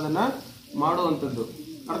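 A man's voice speaking in short bursts with brief pauses between them.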